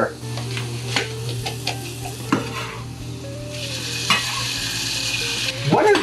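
Onions and garlic sizzling as they sauté in a hot saucepan, with a few sharp taps in between; the hiss grows louder for about two seconds past the middle.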